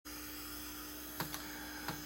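Low, steady electrical hum with a faint steady tone above it, and a few faint clicks in the second half.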